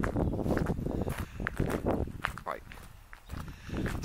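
Footsteps on a gravel path, a steady series of short crunching steps, with a single spoken word about two and a half seconds in.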